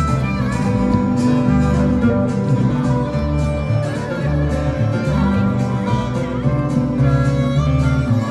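Live country band playing an instrumental break between sung verses: acoustic guitars and an upright bass, the bass stepping through a note about every second under a held melody line.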